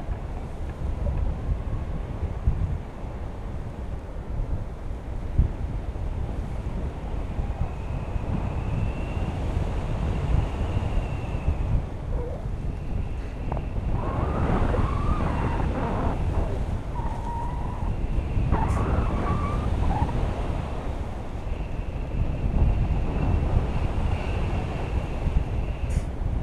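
Wind rushing and buffeting over an action camera's microphone from the airflow of a tandem paraglider in flight, rising and falling unevenly in gusts.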